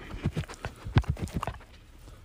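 A quick run of short, light clicks, about seven a second, stopping about one and a half seconds in.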